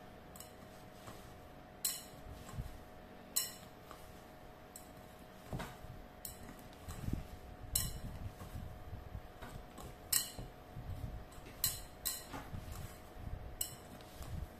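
Hands kneading and folding soft bread dough in a glass bowl: about ten sharp clinks against the glass at irregular intervals, with soft low thuds and squelches of the dough, mostly in the second half.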